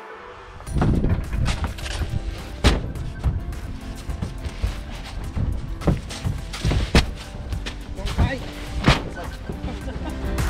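Heavy filled sacks of salt being thrown down onto a truck bed piled with sacks, making irregular dull thuds, the strongest about a third of the way in, near seven seconds and near nine seconds.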